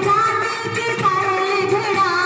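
Haryanvi folk song playing: a sung melody with long, wavering held notes over musical accompaniment.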